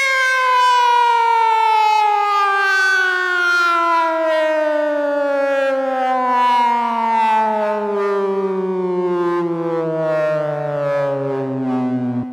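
A lone synthesizer tone sliding slowly and steadily down in pitch, with no beat under it, as a Goa trance track winds down. It fades out near the end.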